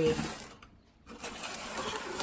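Paper-wrapped plastic nursery pots of succulents rustling and scraping against their cardboard shipping box as they are handled, starting about a second in.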